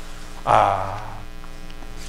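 Steady electrical mains hum, with a brief soft sound about half a second in.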